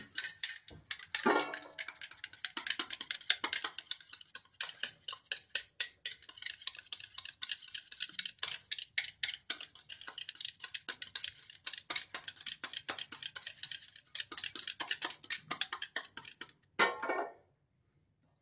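Wire whisk beating curd in a bowl: a fast, irregular run of clicks and taps from the wires striking the bowl, stopping near the end.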